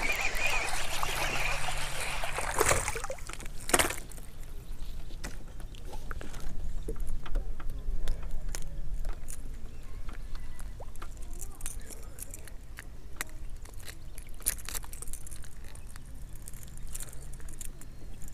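A hooked bass splashing at the water's surface for the first few seconds as it is brought to the kayak. Then comes one sharp knock about four seconds in, followed by faint scattered clicks while the fish and tackle are handled.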